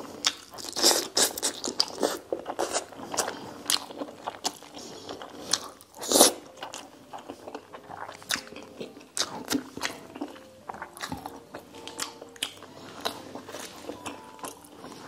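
Close-miked chewing and biting of braised pork (lechon paksiw) and rice: a run of short wet mouth clicks and smacks, with one louder bite about six seconds in.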